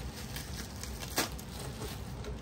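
Bubble wrap rustling softly as it is pulled off an aluminium landing gear, with one sharp click a little over a second in.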